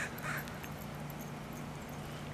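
A crow giving two short calls near the start, over a steady low hum.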